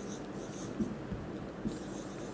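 Faint strokes of a marker pen writing on a whiteboard, a few short scratches.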